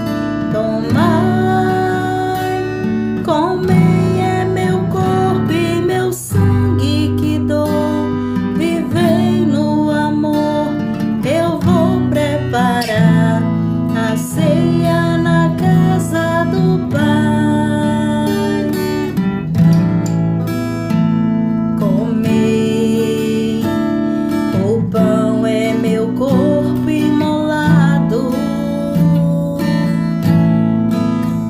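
Strummed acoustic guitar accompanying a slow Catholic communion hymn, with a melody line gliding above the chords.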